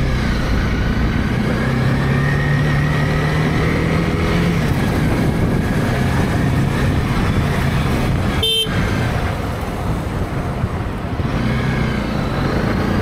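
Motorcycle running at low speed in city traffic, recorded from the rider's seat: engine note with road and wind noise. A brief pitched tone cuts in about two-thirds of the way through.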